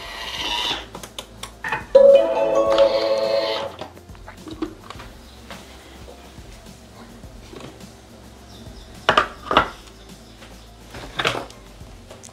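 A brief held musical tone, then a few sharp clicks and knocks of the Thermomix TM6's lid and stainless-steel mixing bowl being unlocked and lifted out, about two thirds of the way through and near the end.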